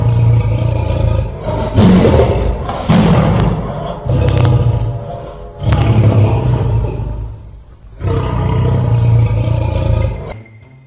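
Lion roaring, a recorded sound effect: a series of loud, rough roars, each swelling up and fading away.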